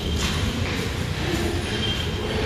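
A steady low rumble with no clear rhythm or change, the kind of background noise a handheld camera picks up indoors.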